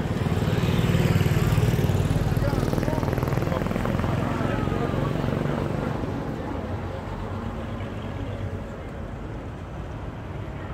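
Engine of a WWII military jeep driving slowly past at close range, loudest about a second in and then fading as it moves away, with other convoy vehicles running behind it. Crowd chatter goes on throughout.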